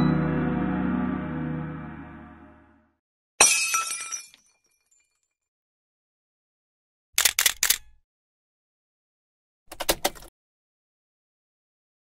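The last notes of the background music ring out and fade over the first few seconds. Then come short editing sound effects: a sudden crash that dies away within a second, about three and a half seconds in, and two quick clusters of sharp clicks, near seven and near ten seconds.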